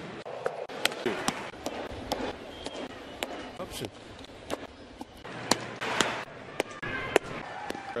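Televised baseball audio cut quickly from pitch to pitch: repeated sharp pops, a fastball smacking into the catcher's leather mitt, over ballpark crowd noise.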